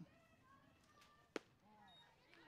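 A single sharp pop of a pitched softball landing in the catcher's leather mitt, about a second and a half in, over otherwise near silence.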